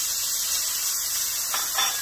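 A little water poured into a hot pan of searing chicken thighs, hissing and steaming steadily as it hits the hot pan.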